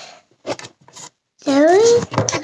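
A few short rustling, scraping handling noises, then about a second and a half in, a child's drawn-out vocal sound, its pitch dipping and rising again.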